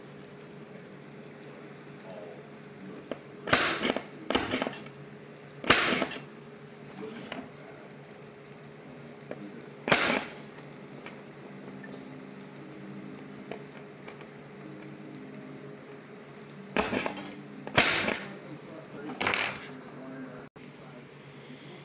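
Metal strut pieces clinking and clattering as they are handled, set down and lined up on a wooden workbench, in a handful of separate knocks with quiet gaps between, over a faint steady hum.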